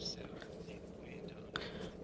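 Faint, indistinct background speech, whispery and low in level, with a short click about one and a half seconds in.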